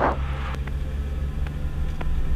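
Twin piston engines of a Piper Navajo running at takeoff power, a steady drone heard inside the cockpit during the takeoff roll.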